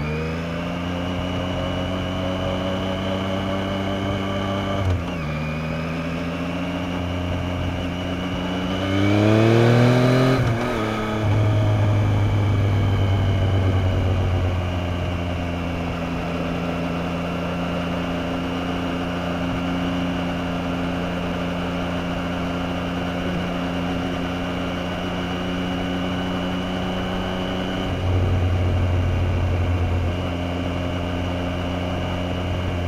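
Yamaha FZ-09 motorcycle's three-cylinder engine pulling away, its pitch rising and then dropping at a gear change about five seconds in. It climbs again, louder, to a second shift about ten seconds in, then settles to a steady cruising note. Near the end the note changes and gets a little louder.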